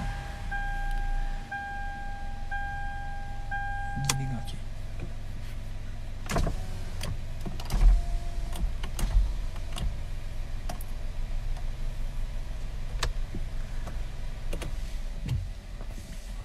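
Car's electronic warning chime, one steady tone repeated about once a second, which stops just after a click about four seconds in. A low steady hum from the car continues underneath, with scattered light clicks.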